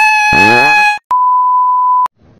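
A held high-pitched note over a voice, cut off abruptly about a second in. Then comes a steady pure 1 kHz test-tone beep, the TV colour-bars bleep, lasting about a second.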